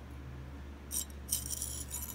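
Loose pieces of a torn steel transmission-crossmember mount plate clinking and rattling against each other and the concrete floor as they are handled, in a run of light metallic clinks starting about a second in.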